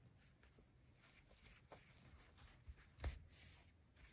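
Near silence with faint rustling and scraping as a metal yarn needle and yarn are drawn through crocheted fabric to sew on an amigurumi antler, and one sharper click about three seconds in.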